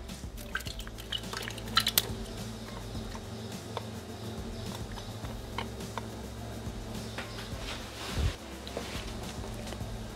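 Tomato sauce poured from a glass bowl into a Thermomix's stainless-steel jug, with a few sharp clinks of glass, the loudest about two seconds in, and a soft low thump about eight seconds in, over quiet background music.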